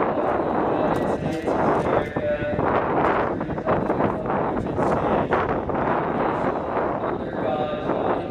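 The Pledge of Allegiance spoken into a microphone and carried over a raceway PA system, the words smeared by echo, with a large crowd reciting along.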